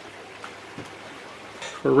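Steady low hiss of background noise with a faint hum, and one soft click a little under a second in; a man starts speaking near the end.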